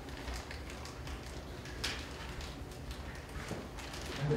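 Quiet room noise with a few scattered light taps and clicks, the sharpest click about two seconds in.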